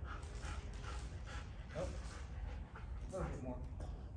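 German Shepherd giving a few short whines, two of them about two and three seconds in, over a steady low hum.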